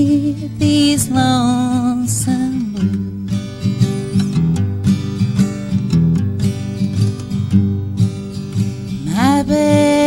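Live acoustic guitar strummed under women's singing in a country-blues song. The voice stops after about two and a half seconds, leaving the guitar strumming alone, and the singing comes back in near the end.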